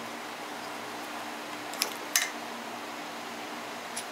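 Two short clicks, less than half a second apart, about two seconds in, as the piston of a seized Yamaha Zuma 50cc two-stroke engine is worked off its connecting rod, over a steady low hum.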